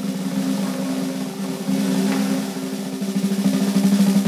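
Canopus The Maple 14x4 shallow maple snare drum played with sticks in a fast roll, swelling louder toward the end.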